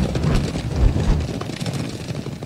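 A field of racehorses galloping on turf: hooves drumming in a loud, rough, steady rumble with a rush of track noise.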